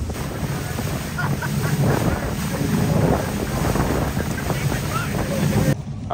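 Wind buffeting the microphone aboard a motorboat under way, over the low drone of its engine and the rush of water along the hull. The sound cuts off abruptly near the end.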